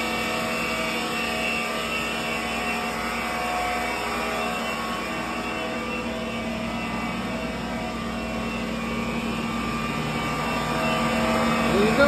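Steady machine hum with several steady tones from a powered-up Clausing CV1640CNCF CNC turning center running without cutting.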